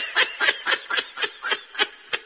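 A person laughing in a quick run of short breathy pulses, about six a second, fading as the laugh winds down.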